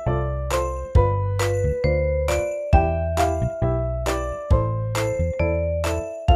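Background music: a gentle melody of struck, bell-like notes over bass notes, about two to three notes a second.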